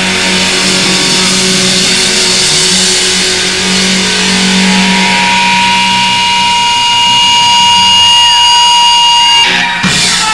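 Live rock band playing loud, with electric guitar and drums. About halfway through, a steady high tone rises out of the music and holds, then stops abruptly just before the end.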